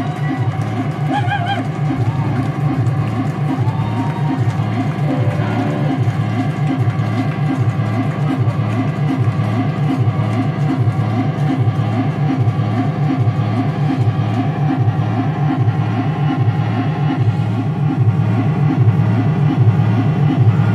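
Loud electric guitar drone played through effects pedals, a sustained wash with a steady pulse about twice a second.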